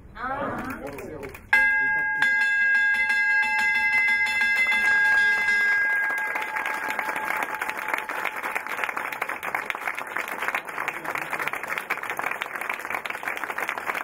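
Large brass ceremonial opening bell rung about a second and a half in, giving a clear ringing tone of several pitches that fades over about five seconds. Applause from a small group takes over as the ringing dies away.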